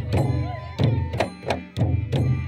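Traditional Bodo dance music: double-headed barrel drums (kham) beat deep strokes about twice a second with sharp slaps, over a held bamboo flute line.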